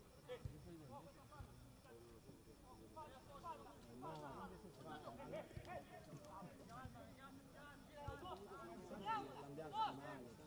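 Footballers' voices calling and shouting across the pitch, faint and unintelligible, rising to louder shouts near the end, with a few short knocks in between.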